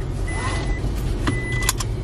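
Car cabin with a steady low engine and road rumble, and a car's electronic warning beep sounding twice, about once a second. A couple of sharp clicks come near the end.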